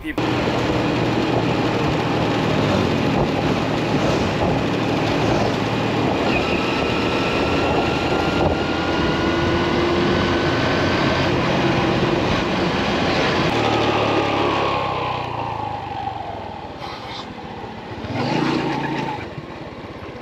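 Motor scooter riding, a steady rush of wind and engine noise with a faint whine. After about fourteen seconds the whine falls in pitch and the noise dies down as the scooter slows, and it is quieter near the end.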